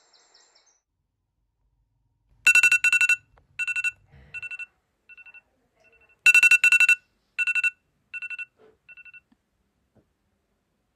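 Phone alarm ringtone going off in rapid beeping pulses: two rounds, each starting loud and repeating more and more faintly.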